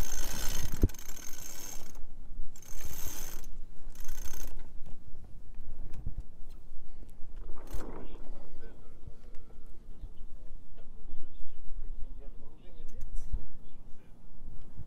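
Sailboat winch clicking as a line is hauled in by hand around its drum, with the rope rasping over the winch and deck hardware.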